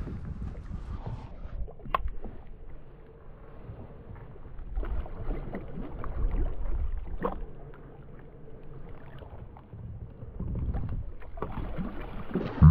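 Water splashing beside a kayak as a hooked fish thrashes at the surface and is scooped into a landing net, with gusting wind rumbling on the microphone, loudest about halfway through.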